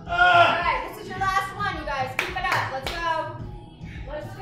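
A few sharp hand claps around the middle, over background music and voices.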